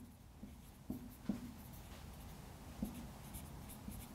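Faint squeaks and scratches of a felt-tip marker writing on a whiteboard, in a few short strokes.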